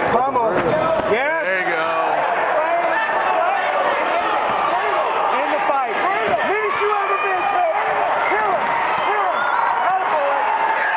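Many voices of spectators and cornermen yelling over one another at an MMA fight, loud and continuous, with a thump near the start.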